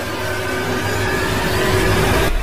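A synthetic whooshing swell with a low rumble, growing steadily louder: the sound effect of an animated subscribe-button outro.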